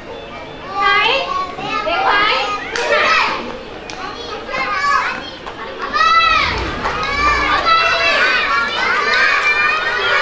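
Many young children's high voices shouting and calling out over one another, growing louder and busier about six seconds in.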